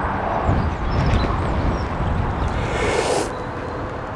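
Outdoor background noise: a steady low rumble with hiss, with no single clear source, rising briefly in hiss about three seconds in.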